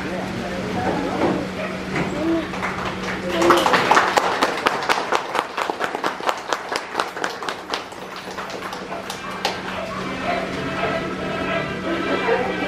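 Small crowd applauding: clapping breaks out about three seconds in, carries on for around six seconds, then dies away.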